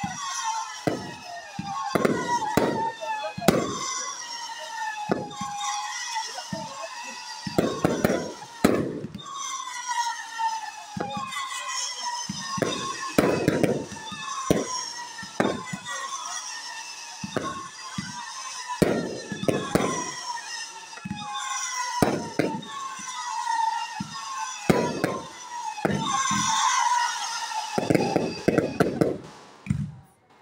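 Fireworks display going off: many irregular bangs and pops in quick succession, mixed with whistles that fall in pitch.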